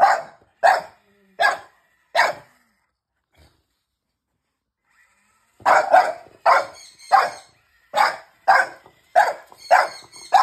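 French bulldog barking at a remote-control toy truck she dislikes. Four short barks, a pause of about three seconds, then a steady run of barks about three every two seconds.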